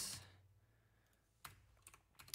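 A few faint computer keyboard keystrokes in a quiet room: a single key about one and a half seconds in, then a few in quick succession near the end.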